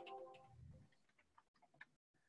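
Near silence: the tail of an electronic chime-like tone fades out in the first half second, followed by a few faint clicks of computer keys being typed.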